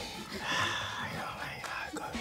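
A quiet, breathy sip of fizzy dandelion and burdock soda from a glass, loudest about half a second in.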